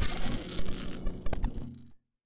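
Electronic outro sting: steady high ringing tones over a low rumble, a quick stuttering glitch about a second and a quarter in, then the sound cuts off abruptly just before the end.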